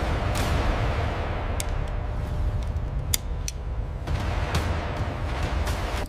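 A steady, heavy low rumble with scattered sharp cracks through it, a dramatic sound-design bed typical of a cinematic soundtrack.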